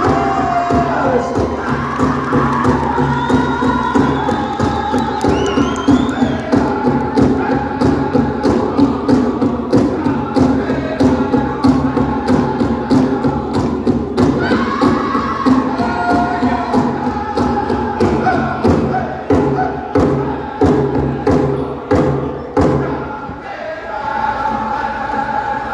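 Powwow drum group playing a fancy shawl dance song: a big drum struck in a steady, fast beat under a group of singers chanting together, heard over the arena's loudspeakers.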